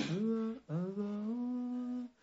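A person humming: a short rising phrase, then one long held note.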